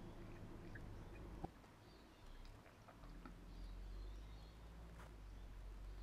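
Quiet car engine and road hum heard inside the cabin, growing a little louder about halfway through as the car picks up speed after a turn. A sharp click sounds just after the start, with a few faint ticks and faint high chirps.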